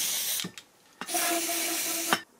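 Aerosol can of lubricant spraying in two hissing bursts with a short pause between them. The first burst stops about half a second in, and the second starts about a second in and carries a faint whistling tone.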